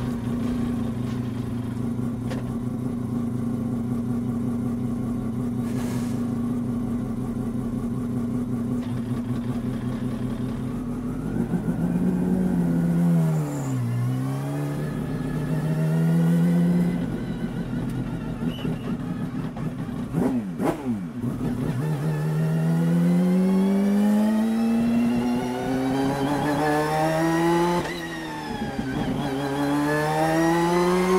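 The 1991 Mazda RX-7 GTO race car's four-rotor rotary engine, heard from inside the cockpit: it idles steadily with a lope for about ten seconds, is revved up and down, then pulls away with the pitch climbing, dropping at a gear change near the end and climbing again. By ear it is running on three to three and a half of its four rotors, not yet cleanly.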